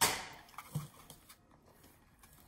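An electric fan falling over: a sudden clatter at the start that dies away within about half a second.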